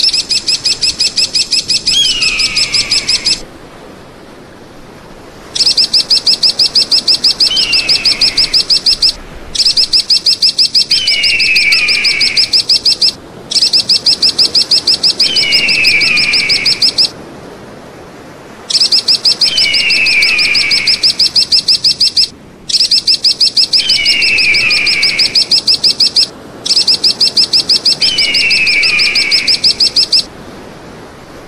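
Eagle calls repeating in a loop: a short, high, downslurred whistle every four seconds or so, overlaid by louder bursts of rapid high chattering notes, roughly ten a second, each burst lasting about three seconds.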